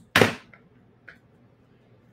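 A single sharp clack as a plastic spool of beading wire is set down on a tabletop, followed by a faint click about a second later.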